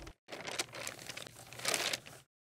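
Sound effect of paper crinkling and rustling. It starts just after a brief gap and grows louder near the end.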